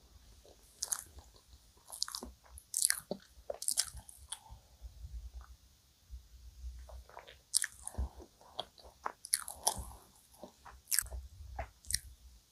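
Close-miked chewing of a soft cream-filled donut: wet, sticky mouth clicks and smacks in two bouts, with a quieter stretch in between while she drinks from a glass of milk.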